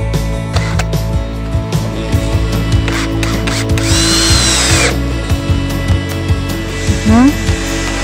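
Makita cordless drill-driver whining for about a second as it drives a screw into the wooden bird-feeder frame, over background guitar music. A short, loud rising tone comes near the end.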